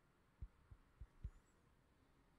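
Near silence broken by four soft, dull low thumps within about a second, handling bumps on the hand-held camera.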